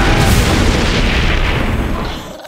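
A sudden loud boom, then a long rushing crash of noise that dies away near the end: a sound effect from an animated soundtrack.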